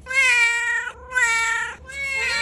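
Tabby cat meowing: two drawn-out meows, the first about a second long, with a third starting near the end.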